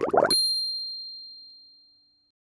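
A single bright electronic ding, the logo sting, struck about a third of a second in as the music and voice before it stop, then fading away over about two seconds.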